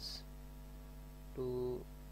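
Steady electrical mains hum in the recording, a low drone with a ladder of overtones, with one short spoken word about a second and a half in.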